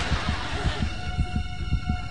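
Suspense sound cue under a silent, stumped quiz contestant: a fast, heartbeat-like low pulse at about four beats a second, with a held tone coming in about a second in. Studio audience laughter dies away in the first second.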